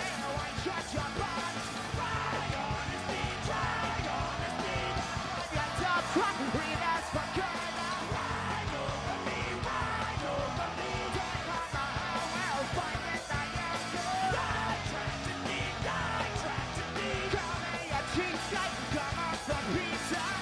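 Punk rock band playing live: distorted electric guitars, bass and drums, with the lead singer's shouted vocals and a second voice singing from the guitarist's mic.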